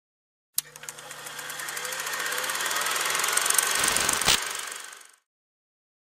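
Production-logo sound effect: a sharp click, then a rapidly ticking, engine-like noise that swells steadily louder. It ends in a low thump and a sharp hit, then fades out.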